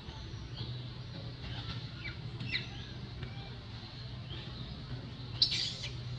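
Birds chirping in the surrounding trees: scattered short, high chirps, with one louder call near the end, over a steady low hum.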